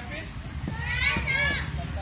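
Children's voices calling out, high-pitched and drawn out, from about halfway through, with a couple of faint knocks underneath.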